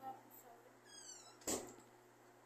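A door squeaking briefly on its hinges about a second in, then shutting with a sharp thump.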